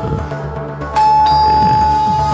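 Background score music with held notes; about a second in, a louder sustained high note comes in suddenly.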